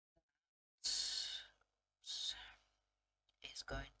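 A woman sighing twice, two breathy exhalations about a second apart, the second fading away.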